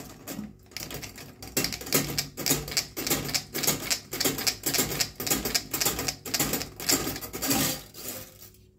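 Coiled-spring metal drain snake being pulled out of a sink drain, its wire coils clicking and rattling rapidly against the chrome plug hole in uneven surges.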